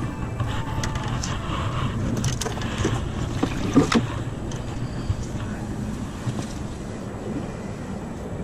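Wind rushing over the microphone and water lapping around a small boat, with a few sharp knocks or taps about two and a half to four seconds in.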